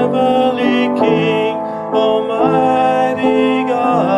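A man singing a Christmas worship song in held, slightly wavering notes over instrumental accompaniment.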